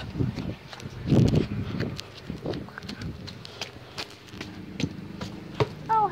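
Irregular footsteps mixed with the rustling and knocking of a handheld phone being carried along. The loudest thump comes about a second in.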